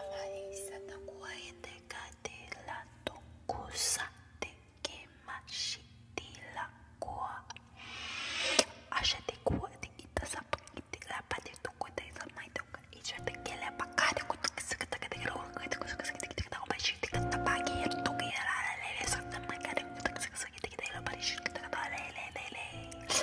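A woman whispering in a made-up 'light language', breathy syllables with sharp mouth clicks, over soft music. From about halfway on, held tones sound again and again.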